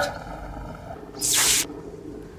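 A short, sharp hiss about a second and a half in, from the smoking, broken-down helmet contraption, over a faint fading hum.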